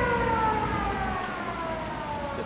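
Civil defense air raid siren winding down: a single tone with overtones slides steadily lower in pitch and fades.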